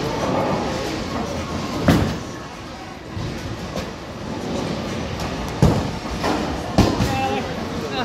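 A bowling ball released onto the lane with a loud thud about two seconds in, rolling down the lane with a low rumble, then hitting the pins with a clatter of several knocks a few seconds later.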